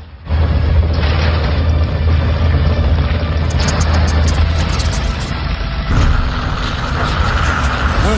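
Saturn V rocket engines igniting for liftoff: a loud, deep, steady rumble that cuts in after a brief hush, mixed with an orchestral film score.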